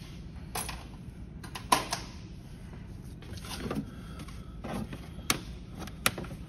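A few scattered clicks and knocks of tools and parts being handled, the loudest a sharp click a little under two seconds in, over a low steady hum.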